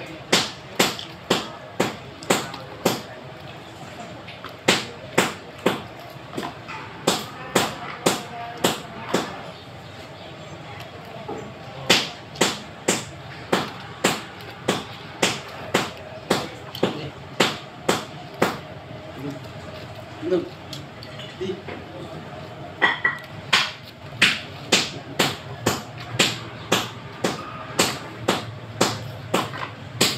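Repeated hammer blows, about two a second, in runs broken by short pauses, each blow ringing briefly.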